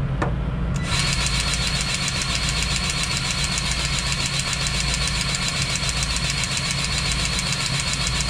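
Cordless grease gun motor buzzing steadily as it pumps grease into the zerk fitting on a semi-trailer's landing gear, starting about a second in and running on past the end. A steady low engine hum runs underneath.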